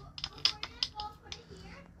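Scattered light clicks and taps from a hand-held angle grinder with a flap disc being turned over in the hand; the grinder is not running.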